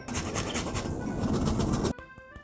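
A block of Pecorino Romano cheese rubbed rapidly back and forth across a flat handheld metal grater: a continuous rasping scrape of quick strokes that stops abruptly just before the end.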